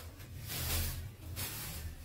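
Plastic produce bag rustling as it is pulled out of a cloth shopping bag, in two short spells, over a low steady hum.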